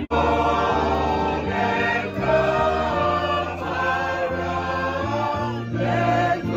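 Background music: a choir singing a gospel-style song over low sustained bass notes. It starts abruptly at the very beginning, as a new track replaces the earlier guitar music.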